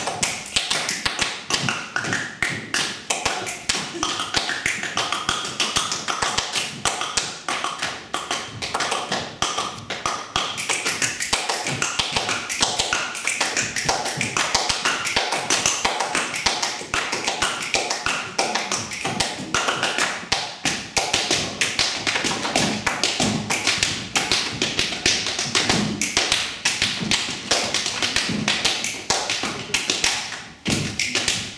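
Tall carved wooden hand drums struck with bare hands in a fast, unbroken stream of strokes.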